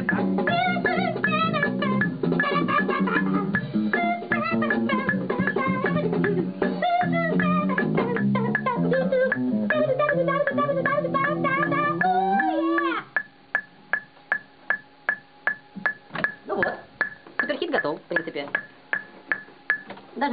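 A recorded song played back: a voice singing over a band with guitar, bass and keyboard, stopping abruptly about 13 seconds in. After it a steady ticking of about two to three clicks a second continues, with a few brief voice sounds.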